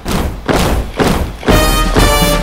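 Heavy drum beats, about two a second, from a marching brass band's drums; about one and a half seconds in the brass joins and the band plays a march.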